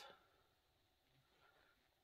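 Near silence: room tone, with the last trailing sound of a spoken word right at the start.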